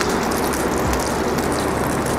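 Hot cooking oil sizzling and crackling steadily in a nonstick frying pan, left from pan-frying chicken longanisa until caramelized.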